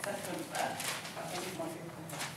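Low murmuring and chuckling from a small group, with paper rustling and a few footsteps.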